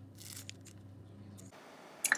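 Kitchen scissors snipping through chives, two faint snips in the first half second over a low steady hum; the hum cuts off about one and a half seconds in, leaving near silence.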